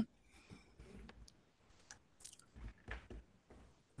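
Faint handling noises at a lectern: soft rustles and light clicks, with a few low knocks in the second half.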